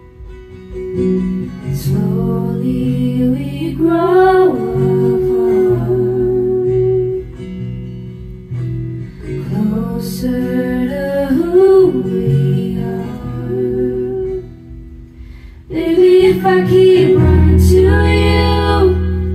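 Live indie-folk band playing through a PA: strummed acoustic guitar, keyboard and bass under sung vocal phrases, recorded close to a speaker. The music dips quietly at the start and again about three seconds before the end, then swells back with a heavy bass entry near the end.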